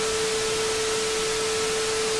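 Television static sound effect: a steady hiss with a single steady mid-pitched tone running through it.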